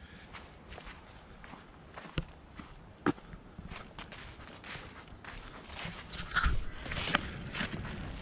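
Footsteps of a person walking on an asphalt path strewn with fallen leaves, a steady run of light steps with a couple of sharper ones about two and three seconds in.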